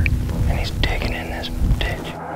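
A man whispering, with a low rumble underneath.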